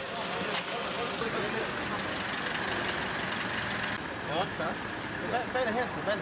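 Vehicle engines running as cars drive slowly up, a steady mechanical noise, with men's voices calling out over it from about four seconds in.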